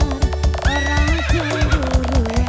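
Live dangdut koplo band music: a steady drum and bass beat under a sliding, bending melody line.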